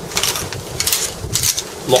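A gas blowback airsoft M4 rifle being worked by hand: about three short, sharp metallic clicks and rattles as the bolt is brought back to lock it to the rear.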